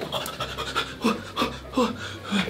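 A man's short, startled gasps and cries in quick succession, about three a second, growing louder about a second in, as he wakes to a bed covered in cockroaches.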